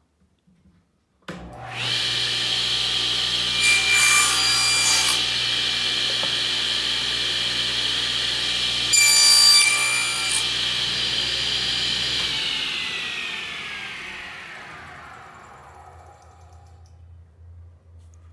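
Table saw motor switched on, running with a steady high whine while the blade cuts through a scrap pine block in two short, harsher spells, then switched off and winding down with a falling whine.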